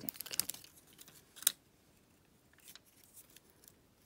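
Wooden lolly stick handled and set down on a cloth-covered tabletop. A cluster of small clicks and rustles comes first, then one sharp tap about a second and a half in, then a few faint ticks.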